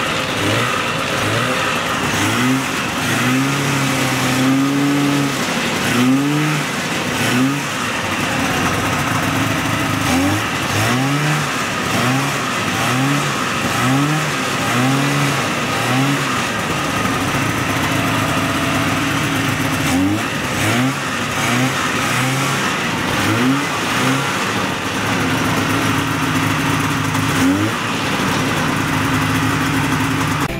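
1977 Ski-Doo Olympique 340's Rotax 340 two-stroke twin running on its first start after years of storage, revved again and again in short rising blips, often about one a second, with a longer held rev early on.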